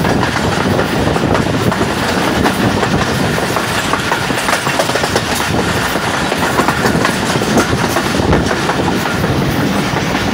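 Hazara Express passenger coach running at speed at night, its wheels clicking and clattering over the rails under a steady rush of track and air noise, heard from the open coach doorway.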